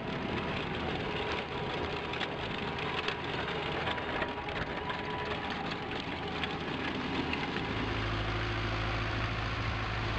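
Tractor wheels and a green implement's wheel rolling through field soil at close range: an even rushing noise with scattered clicks and knocks from clods and stones. About three-quarters of the way in it changes to the steady low drone of an Ursus tractor's diesel engine running at working speed.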